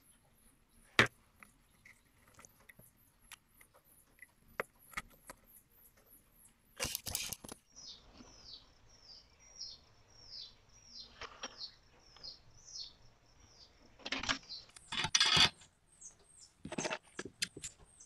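Quiet bench work as wires are soldered onto an amplifier circuit board: a sharp click about a second in, and short bursts of handling noise about seven seconds in and again near the end. Behind it a bird chirps over and over, short high notes that fall in pitch.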